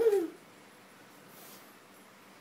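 A toddler's brief babbling vocal sound, a single short wavering syllable at the very start, followed by quiet room tone.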